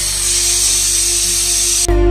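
Pressure cooker on a gas burner whistling: a loud, shrill steam hiss through its weighted vent that cuts off suddenly near the end. The whistle is the sign that the cooker has come up to pressure and is venting steam.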